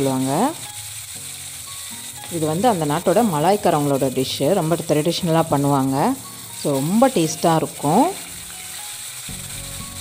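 Chicken pieces frying in hot oil in a wok, a steady sizzle that is clearest in the gaps near the start and end. A voice sings or speaks over it in several stretches and is the loudest sound.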